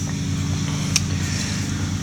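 Steady low hum of a running electric motor, with a single light click about a second in.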